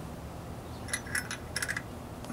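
Light metallic clinks, a quick cluster of six or seven in the second half, as a steel spark plug socket wrench is fitted over the spark plug on the engine's cylinder head.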